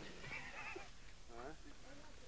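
Faint high-pitched voices: two short wavering calls, the first about half a second in and the second just past the middle.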